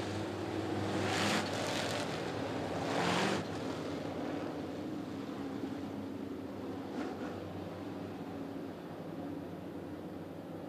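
A field of dirt late model race cars' V8 engines running at low pace speed, a steady engine hum under a wash of rushing noise that swells louder twice, about a second and three seconds in.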